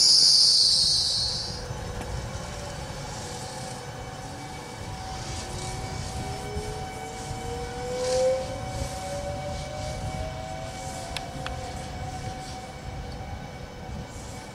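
Trenitalia Pop electric multiple unit at low speed: a high wheel or brake squeal dies away in the first second or two, leaving the steady hum of its electrics with a whine that slowly rises in pitch.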